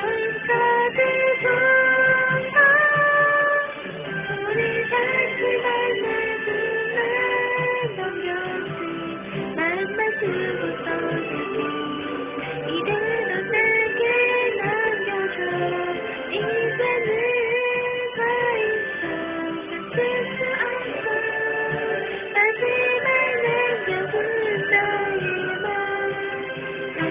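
A woman singing a Korean song into a microphone over a Kumyoung home karaoke backing track, her voice holding and bending through sustained phrases.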